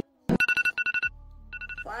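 Wake-up alarm sound effect: a fast, pulsing two-tone electronic trill in two bursts with a short pause between, after a single click.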